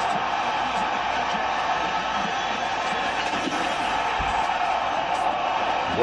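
Steady arena crowd noise from a televised hockey game, heard through the TV in the room, with faint broadcast commentary beneath it.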